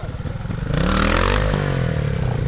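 Trials motorcycle engine running low, then revved hard about two-thirds of a second in as the bike pulls away. The pitch rises, then eases back after about a second, with a loud noisy rush that comes with the rev.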